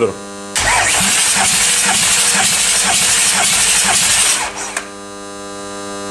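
Audi 3.0 TDI V6 diesel (CGQB) cranked over by its starter for about four seconds, stopping suddenly without the engine running. This is a compression test of cylinder one, which reaches a healthy 26 kg/cm². A steady electrical hum is heard before and after the cranking.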